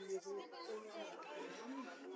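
Faint chatter of several people's voices in the background, with no clear words.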